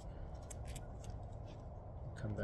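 Faint crinkling and a few soft clicks of stretchy plastic grafting tape being pulled and wound around a graft union to seal it, over low steady background noise.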